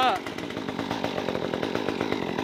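Brand-new Stihl MS 194T top-handle chainsaw's small two-stroke engine running steadily and unloaded, choke off, just after its first start, left to break in and warm up.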